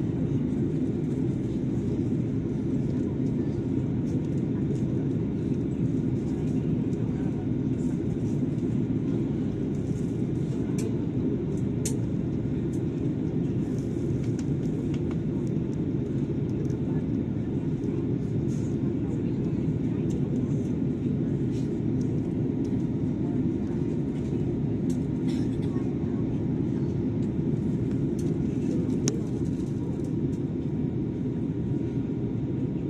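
Steady airliner cabin noise during descent: an even low rumble of engines and airflow, with faint ticks now and then.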